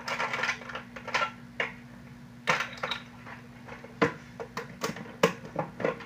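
Pens, pencils and markers being handled, clicking and clattering against each other and the desk in an irregular string of sharp knocks, over a steady low hum.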